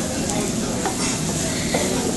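Fried rice and noodles sizzling in a large black pan while two wooden spatulas quickly chop, scrape and toss through them, with a few short knocks of the spatulas against the pan.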